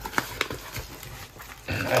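Paper mailer envelope and cardboard rustling and scraping as a tightly packed stack is pulled out, with a couple of sharp ticks in the first half second.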